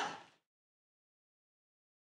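A shouted voice fades out just after the start, then dead silence.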